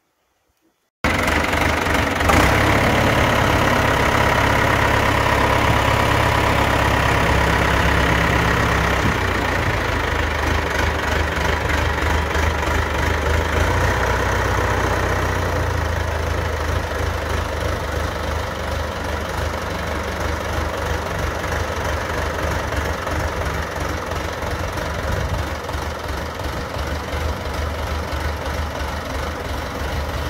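John Deere 2030's four-cylinder diesel engine running as the tractor drives off, its sound growing gradually fainter as it pulls away.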